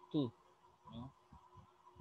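A man's voice says 'two' near the start, then a faint syllable about a second in; under it, a faint steady background hum that never changes.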